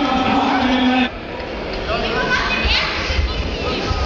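Ringside voices shouting in a large hall during a kickboxing bout: one long drawn-out shout that breaks off about a second in, then shorter calls sliding in pitch.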